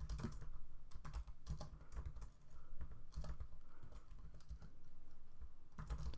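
Typing on a computer keyboard: quick runs of keystrokes broken by brief pauses.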